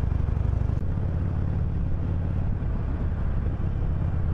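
Harley-Davidson Iron 883's air-cooled 883 cc V-twin engine running steadily as the motorcycle rides in traffic, a low, continuous engine note.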